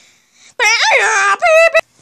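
A child's high-pitched wailing voice without words, wavering up and down in pitch. It starts about half a second in, breaks briefly, and carries on for about another half second.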